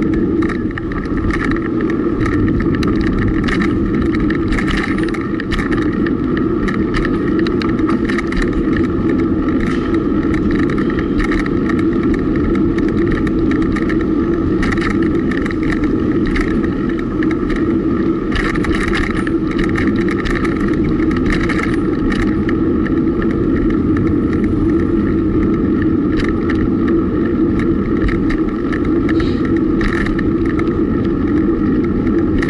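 Steady rumble of wind and road noise on a bicycle-mounted camera during a road-bike ride on city streets, with frequent small clicks and rattles throughout.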